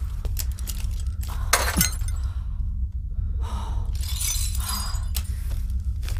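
Glass smashed by a cloth-wrapped fist: a sharp shatter about one and a half seconds in, then shards tinkling and clinking down about two seconds later, over a steady low drone.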